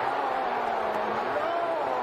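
Steady crowd noise from a college football stadium just after an interception is returned for a touchdown, with a voice faintly rising and falling over it.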